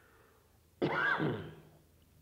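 A man clears his throat with a single short cough about a second in.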